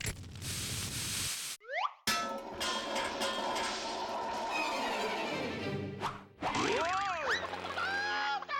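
Cartoon sound effects over an orchestral score. A short burst of hiss opens it, followed by a quick rising swoop and busy music. About seven seconds in comes a springy boing, and it ends on a held chord.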